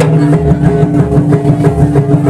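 Live Javanese gamelan-style accompaniment for a kuda lumping dance: steady ringing pitched tones over a low pulse, with kendang hand-drum strokes.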